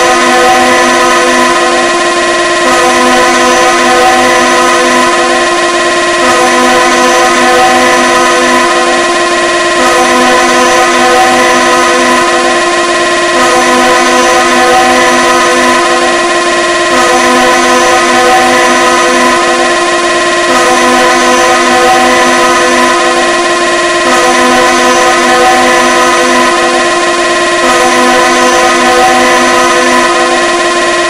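Loud DJ 'competition music' track built on a blaring, held horn sample: several steady tones sounding together, looping in a phrase that repeats about every three and a half seconds.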